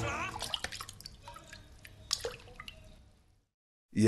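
Dripping water, a few sharp drips scattered over the dying tail of music, fading away to silence near the end.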